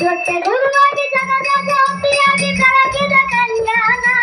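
A live Kannada devotional song: a voice sings long, wavering notes over harmonium, with a hand drum and small hand cymbals keeping a steady beat.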